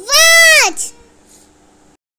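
A young child's voice: one high-pitched, drawn-out sing-song call of under a second that rises and then falls in pitch, most likely a repeat of the word "watch".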